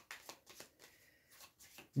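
A deck of playing cards being shuffled by hand: a quick string of faint card clicks and flicks.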